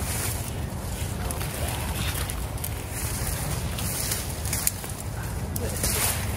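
Irregular rustling and crackling of leafy black bean vines and dry pods being pulled and handled by hand, over a steady low rumble of wind on the microphone.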